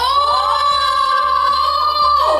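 Excited high-pitched screaming from women, a long held shriek at one steady pitch that lasts about two seconds.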